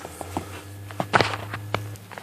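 Handling noise as tools and the rag are reached for under the car: a few soft knocks and rustles, the loudest a little past the middle, over a low steady hum.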